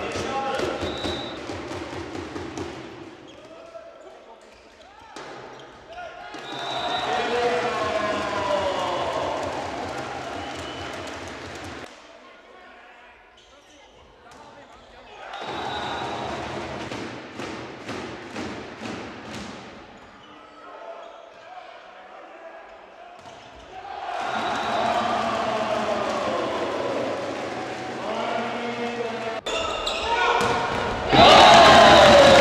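Spectators in a volleyball hall: clapping, cheering and voices, with sharp repeated claps or thumps, in several loud stretches with quieter dips between them.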